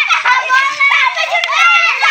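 Several children's voices chattering and calling over one another without a break, high-pitched and loud.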